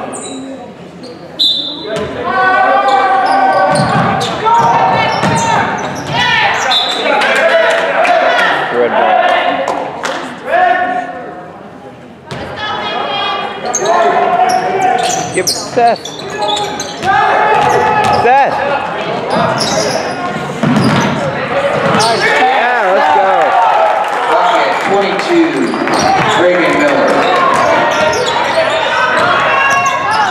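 A basketball bouncing on a hardwood gym floor during live play, against steady shouting and chatter from players and spectators in a large, echoing hall.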